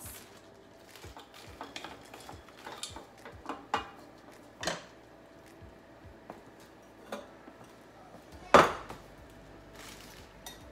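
Kitchen clatter from pots and utensils being handled: scattered light clicks and knocks, then one loud clank about eight and a half seconds in, as a stainless steel pot is set down on the counter.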